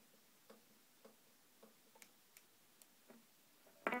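Faint clicks of the TAP button on a Line 6 Spider IV 15 guitar amp being pressed over and over, about two presses a second and a little uneven, to set the tempo of the tape echo delay. A louder sound comes in just at the end.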